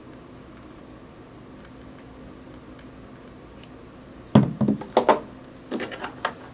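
Faint steady room hum, then about four seconds in a heavy glass candle jar is set down with a solid knock on a tabletop. A few lighter clicks and knocks of handling follow.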